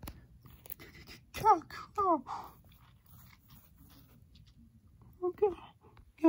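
A young voice making short mouth sound effects: two quick calls that each slide down in pitch, about a second and a half and two seconds in, with small clicks and handling noise around them. A few fainter vocal sounds come near the end.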